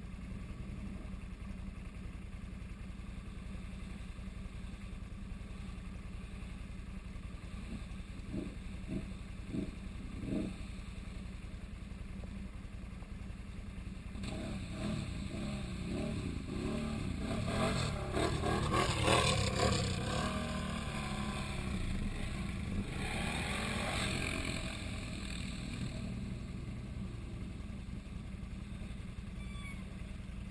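A Can-Am Outlander ATV engine runs at a steady low drone, then revs up close as the machine churns through muddy pond water and climbs out, with splashing. The sound builds from about halfway, is loudest about two-thirds of the way in, and settles back to the low drone near the end.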